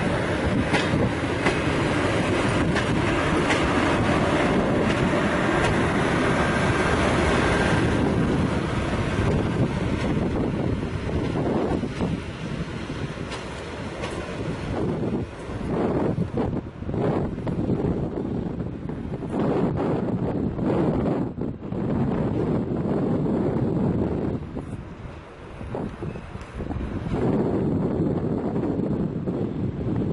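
SU42 diesel shunting locomotive running as it moves a short rake of passenger coaches along the track, engine and rolling wheels making a steady rumble. Wind buffets the microphone, and the sound swells and dips unevenly through the middle.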